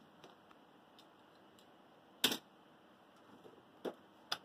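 Two sharp clicks of toy cars being handled against a wooden shelf, the louder about two seconds in and a smaller one near the end, with faint ticks between.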